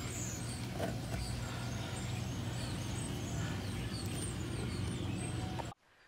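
Steady outdoor background noise with a low hum and faint high chirps, cutting off suddenly near the end.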